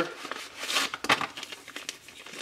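Small parts packaging crinkling and rustling in the hands as it is handled, with a few light clicks.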